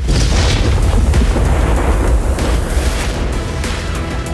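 A 120 mm mortar round exploding on its target: a sudden boom with a deep rumble that dies away over about three seconds, heard over background music.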